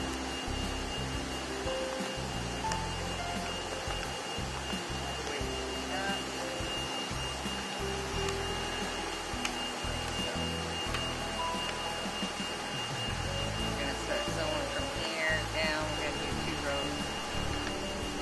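Steady whirring hiss of a sail plotter's vacuum hold-down blower running in the background, with a constant high whine over it.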